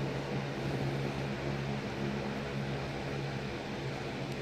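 2004 Lasko Weather Shield box fan running steadily on medium speed: an even rush of air over a steady low motor hum.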